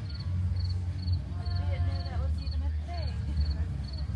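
Crickets chirping steadily, one high short chirp about twice a second, over a constant low rumble, with faint voices in the background.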